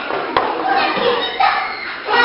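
Young children chattering and calling out in a classroom, with one sharp knock about a third of a second in.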